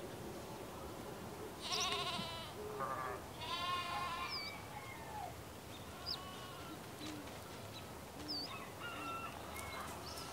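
A farm animal bleats twice in a wavering voice, about two and about four seconds in, with a shorter cry between. Small birds chirp a few times afterwards over steady background noise.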